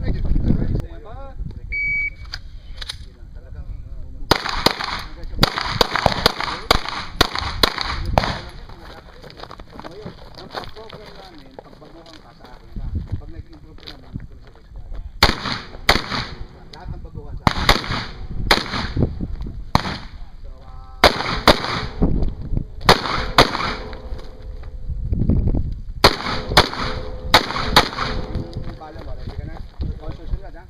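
A shot timer gives a short high beep about two seconds in, then a rifle fires string after string of rapid shots, in several separate volleys with short pauses between them.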